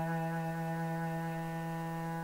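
A cello bowed on one long, steady low note, played alone.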